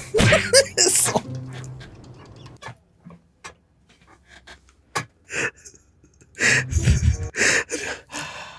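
A man laughing hard in breathless bursts without words: one burst in the first second, then more about five seconds in and again near the end.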